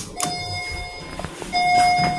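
A click as the car button is pressed, then the elevator's electronic chime sounding twice. Each is a steady, bell-like tone of just under a second, and the second is louder.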